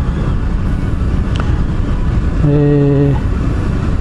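Honda VTR250's V-twin engine running steadily on the move in traffic, heard through a helmet-mounted microphone with a heavy, even rumble of road and wind noise. A brief held tone cuts in about two and a half seconds in.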